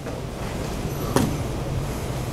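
Steady low room hum, with one sharp click a little over a second in.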